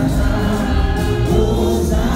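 Church congregation singing a gospel worship song together in Haitian Creole, over instrumental accompaniment with a steady bass.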